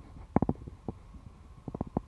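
Irregular sharp clicks and knocks in a few short clusters over a low rumble, from the handling of wire and plastic sheeting on a steel greenhouse frame.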